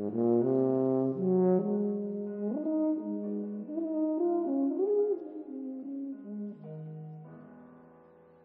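Yamaha YFB821S bass tuba playing a slow melodic line in a live tuba-and-piano piece, with piano beneath. It comes in strongly at the start, moves through several sustained notes with a short upward slide near the middle, and grows softer over the last two seconds.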